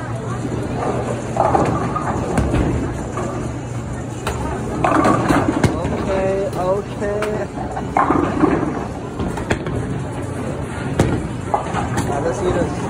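Bowling-alley noise: a bowling ball rolling down the lane and pins clattering, with a few sharp knocks, over steady background chatter.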